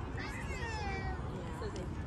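A high-pitched voice calling out once, a long call that slides down in pitch, over a steady low rumble.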